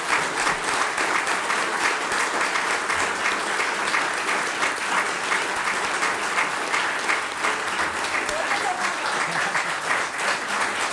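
A roomful of people applauding steadily, many hands clapping at once.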